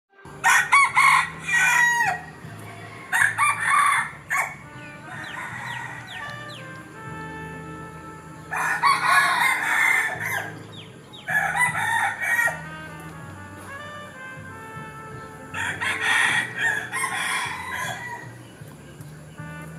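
A rooster crowing five times, each crow lasting a second or two, over quiet background music with steady low tones.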